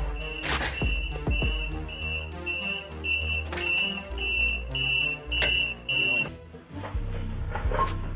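A store door alarm beeping at a steady high pitch, about twice a second, over background music. The beeping stops about six seconds in.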